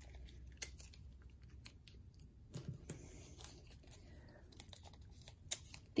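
Washi tape being torn and pressed down by hand onto paper on a cutting mat: faint, scattered crinkles and small ticks.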